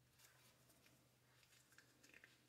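Near silence: room tone with a low steady hum and a few faint clicks and rustles of small parts and a grease tube being handled.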